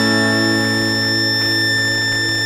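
The end of a solo acoustic song held on one long, unchanging chord after the strumming stops: a steady low drone with a high whistling tone on top, and no strokes or beat.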